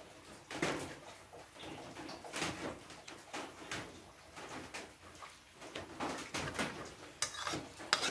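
A metal spoon clinking and scraping against a ceramic plate in scattered short knocks while someone eats.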